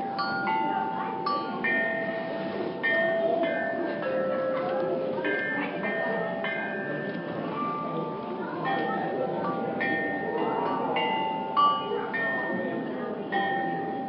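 Recorded music of a chime of Chinese bronze bells struck with mallets, played back through a tablet's speaker: a melody of struck bell notes, often several sounding together, each ringing on as the next is struck.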